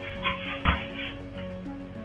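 A dog barks and yips a few short times over steady background music, with a sharp thump about two-thirds of a second in.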